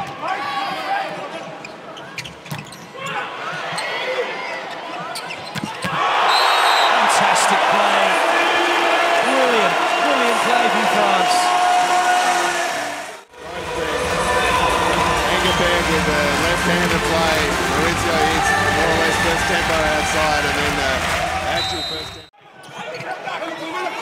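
Volleyball being struck during a rally, sharp thuds over the noise of a crowd in a large hall. About six seconds in, the crowd becomes loud and dense, with many voices at once. The sound cuts out suddenly for a moment twice.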